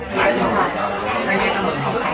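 Several people talking at once: overlapping chatter of a roomful of guests, which grows louder just after the start.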